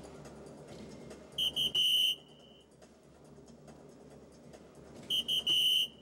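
Electronic soft-tip dartboard sounding its hit signal twice, about four seconds apart, as two darts land in triples: each time two short high beeps and then a longer held electronic tone.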